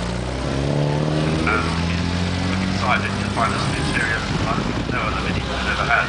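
Classic Mini's small four-cylinder engine pulling away at low speed, its revs rising, dropping at a gear change about half a second in, then rising again for a few seconds.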